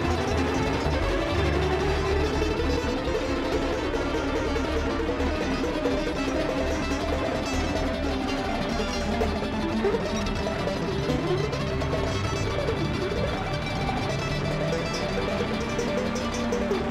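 A bluegrass string band playing live, with no singing: a mandolin picks the lead in quick up-and-down runs over banjo, guitar and upright bass.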